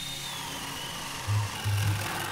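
Power drill boring into a timber beam: a steady rasp of cutting wood over a high motor whine that sags slightly in pitch under load. A low, thumping music beat joins about halfway through.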